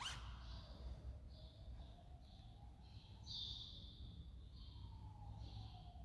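Faint, high chirping of a small bird, repeating about once a second, with one longer chirp a little past the middle. A brief sharp swish comes right at the start, over a low hum.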